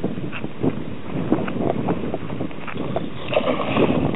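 Wind buffeting the microphone, with a few short irregular knocks.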